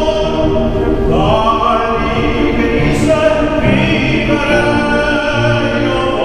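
A male opera singer singing an aria in full voice with grand piano accompaniment, holding long notes.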